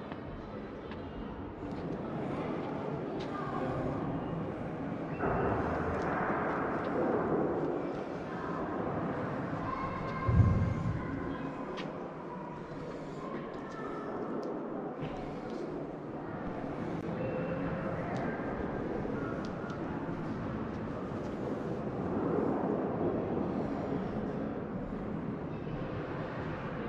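Steady background noise of a large exhibition hall, a low hubbub. A single low thump comes about ten seconds in.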